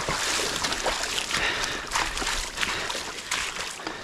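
Boots splashing and sloshing through shallow floodwater, a few uneven steps, over the steady patter of rain on the water's surface.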